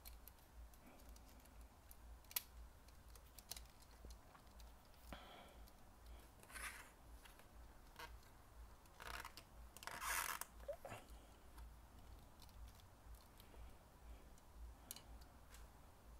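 Faint clicks, taps and rubs of the plastic S.H. Figuarts action figure and its toy motorbike being handled and posed by hand. A few sharper clicks are scattered through, with the loudest brief scuff about ten seconds in.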